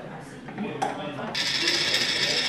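Metal-on-metal rattle from a milling machine's drawbar and drill chuck as the drawbar is unthreaded to free the chuck from the spindle. A single click comes a little under a second in, then a steady rattle starts just past halfway.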